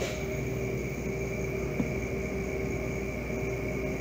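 Walk-in cooler evaporator fans running at low speed: a steady whir with several faint, steady whining tones and no change in speed.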